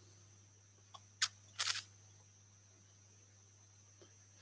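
Two short, sharp clicks about half a second apart from a laptop being operated, over a faint steady hum.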